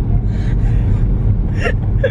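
Steady low rumble of road and engine noise inside a moving car's cabin, with a breathy laugh and a short gasp-like voice sound about one and a half seconds in.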